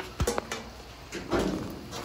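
Faint handling noises: a light click or two near the start and a soft rustle a little past halfway.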